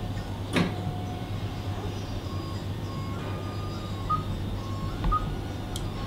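Room tone of a hushed hall during a standing silence: a steady low hum, one sharp knock about half a second in, and faint short high tones through the second half.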